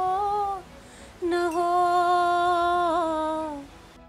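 A woman singing long held vocal notes unaccompanied: one note ends about half a second in, and after a short pause a single long note is held for about two and a half seconds, with a slight waver and a small drop in pitch at its end.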